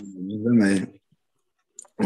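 Speech over a video call: one drawn-out spoken word, then about a second of dead silence with a couple of faint clicks near the end.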